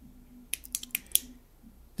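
Tail-cap push-button switch of an LED tactical flashlight clicking several times in quick succession about half a second in, stepping the light from strobe to its SOS mode.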